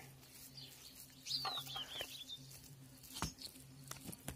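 Faint quiet surroundings: a bird gives a short run of high, falling chirps about a second and a half in, over a steady low hum, with a single soft knock near the end.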